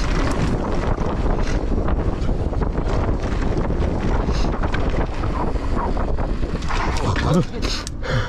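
Wind buffeting the camera microphone as a mountain bike rolls fast down a dirt trail, with steady tyre and chassis rattle over the rough ground. A short voice sound comes near the end as the bike slows.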